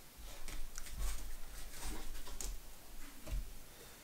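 Yu-Gi-Oh cards being picked up and gathered off a playmat: soft scattered taps and rustles over a low rumble of hands on the table, dying away near the end.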